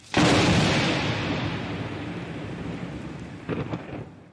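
Thunderclap sound effect: a loud crash of thunder that rolls on and slowly fades, with a brief second crackle near the end.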